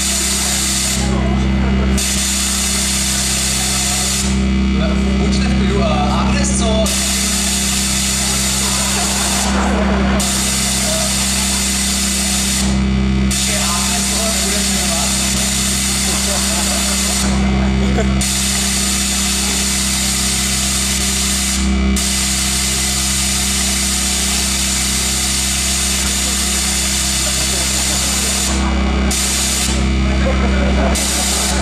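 A loud, steady electronic buzz with a deep low hum over the hall's loudspeakers, a menacing sci-fi drone that shifts in texture every few seconds, with faint voices under it.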